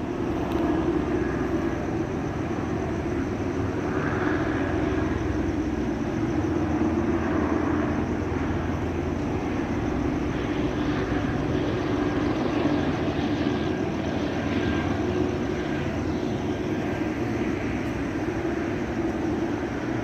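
Aircraft engine drone overhead: a steady, unbroken hum.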